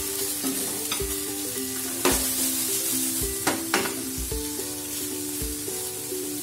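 Spice-marinated paneer cubes sizzling as they fry in a nonstick pan, turned with a silicone spatula, with a few sharp knocks of the spatula against the pan about two seconds in and again around three and a half seconds. Soft background music with a simple melody plays underneath.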